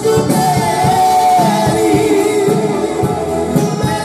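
Romani band music with a singer holding long, wavering notes over a busy instrumental accompaniment.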